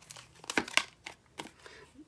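Tarot cards and a paper label being handled on a table: light rustling with a few soft taps as a card is drawn from the deck.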